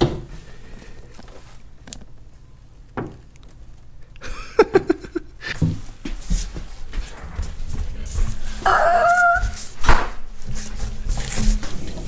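A dog whining briefly behind a door, over the low rumble and knocks of a large wheel and tyre being rolled along the floor.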